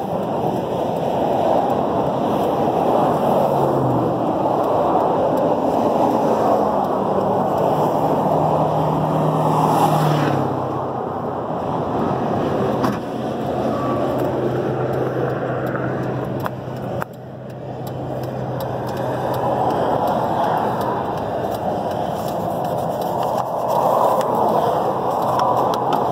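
A vehicle engine running steadily under a constant rushing noise, its low hum stepping down slightly in pitch about four seconds in and again about ten seconds in.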